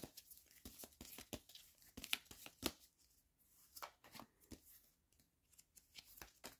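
A tarot deck being shuffled by hand: quiet, irregular card flicks and slaps, several a second, with a short pause near the end.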